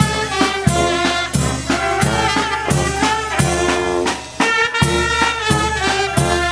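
Marching brass band playing a tune: saxophones and brass horns over a sousaphone bass line, with a steady drum beat about every 0.7 seconds.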